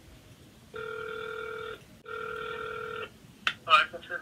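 Telephone ringing tone heard through a phone's loudspeaker: two steady rings of about a second each, the outgoing call ringing through after a menu choice, with a voice coming on near the end.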